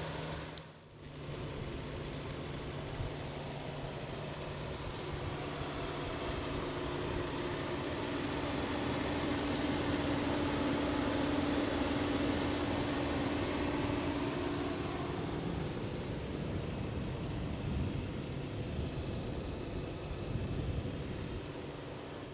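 3.6-litre Pentastar V6 idling, heard with the hood open as a steady hum that grows somewhat louder in the middle and eases off near the end.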